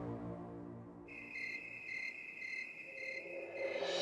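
A held music drone fades out, and from about a second in a cricket chirping pulses about twice a second in high, steady tones.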